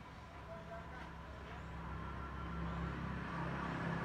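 A motor vehicle's engine running with a low, steady hum, gradually growing louder.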